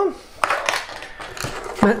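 A couple of light clicks and clatters of small metal tools and parts being moved aside and set down on a wooden tabletop.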